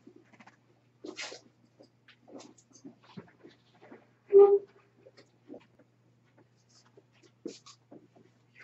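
Soft scattered scratches and dabs of a paintbrush on watercolour paper, with one short, loud pitched squeak or yelp about four and a half seconds in.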